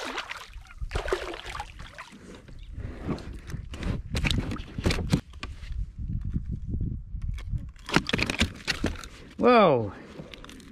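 Water splashing as a hand grabs a hooked cod beside a plastic kayak, then irregular knocks, clicks and rustling as the fish is handled on the kayak's deck. Shortly before the end, a brief voice sound falls steeply in pitch.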